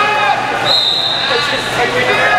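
Spectators and coaches shouting over one another during a wrestling match, the voices echoing in a large gym. A steady high-pitched tone sounds briefly, about a second in.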